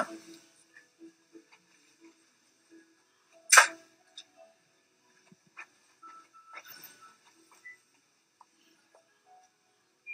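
A mostly quiet room with soft scattered clicks and rustles of handling, and one short, sharp noise about three and a half seconds in.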